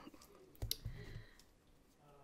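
Scissors picked up off a planner page: a faint handling thump with one sharp click about two-thirds of a second in.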